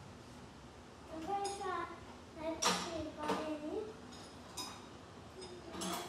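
Metal sockets and tools clinking in a steel tool chest drawer as they are picked through, a few light clinks with a faint child's voice among them.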